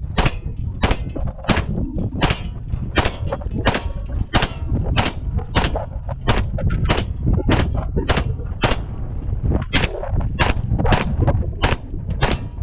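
DIY Mac-style 9mm upper firing single shots at a steady pace, about one and a half shots a second, with a short break near three quarters of the way through.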